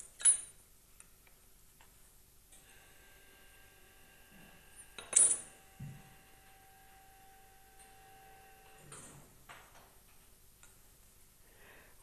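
Knife blade clicking against the rim of a rectangular metal baking pan while trimming off excess dough: two sharp metallic clicks, one right at the start and one about five seconds in, with faint handling sounds between.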